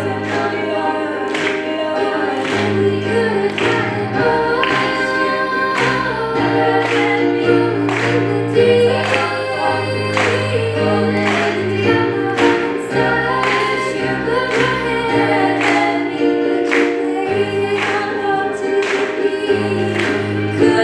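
A small group of female voices singing together in harmony, over keyboard accompaniment that keeps a steady beat.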